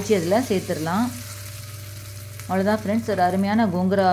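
Hot-oil tempering of mustard seeds, urad dal, red chillies and curry leaves sizzling as it is poured onto gongura thokku paste. A person's voice sounds over it in the first second and again in the last second and a half.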